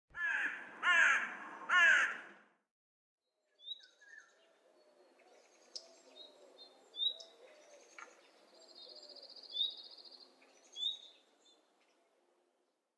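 Three loud, harsh caws from a bird in the first two and a half seconds. After a short gap come fainter high chirps and a short rapid trill from small birds.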